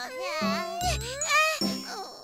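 Light, jingly cartoon background music with a low bass line, under wordless cartoon character vocalizations that glide up and down in pitch.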